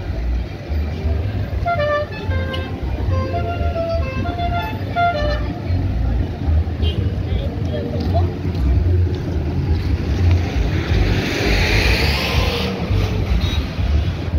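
Busy road traffic with a heavy low rumble from wind on the microphone. In the first five seconds there is a run of short, stepped pitched notes. About eleven seconds in, a vehicle passes close with a whoosh that swells and fades.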